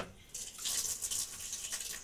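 Rice being washed by hand in a steel bowl of water: a soft, uneven swishing of wet grains rubbed and stirred against the bowl.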